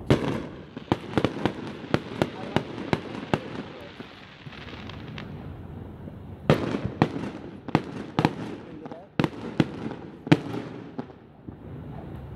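Aerial fireworks going off: a loud bang right at the start, then a quick string of sharp cracks for about three seconds, and after a quieter stretch another cluster of bangs and cracks from about six and a half seconds in, with a second loud bang about ten seconds in.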